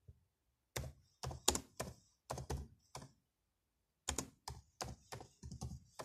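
Computer keyboard being typed on, the keystrokes coming in two runs of separate clicks with a pause of about a second between them.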